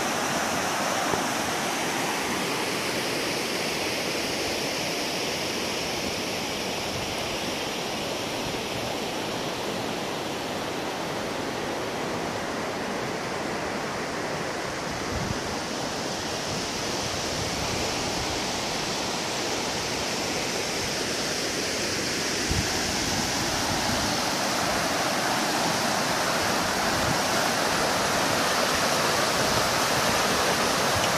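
River water rushing over rocks and stones in shallow rapids: a steady, even rush that grows a little louder near the end.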